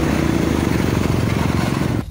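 Motorcycle engine running steadily while the bike is ridden along a road, with wind rushing over the helmet-mounted microphone.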